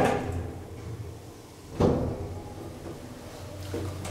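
Elevator car doors shutting with a single thump about two seconds in, over a steady low hum in the car.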